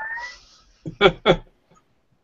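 A man laughing: a short rising high-pitched squeal, then two quick pitched laughs about a second in.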